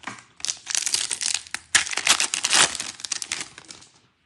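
Foil wrapper of a 2022 Bowman baseball card pack being torn open and crinkled: a run of crackling rustles, loudest about two seconds in.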